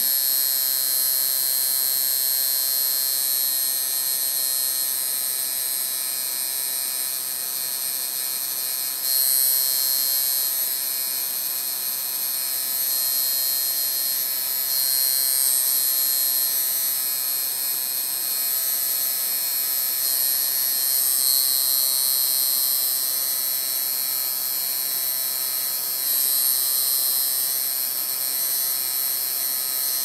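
Tattoo machine buzzing steadily while lining, with small rises in level every few seconds.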